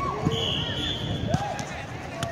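A football kicked and thudding on a hard outdoor court, two thuds about a second apart, among players' shouts. A short steady high-pitched tone sounds near the start, under the shouting.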